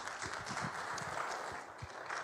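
Applause from a church congregation: a steady patter of many separate hand claps.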